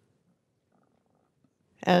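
Near silence during a pause in speech, with only a faint low murmur about a second in; a woman's voice starts again near the end.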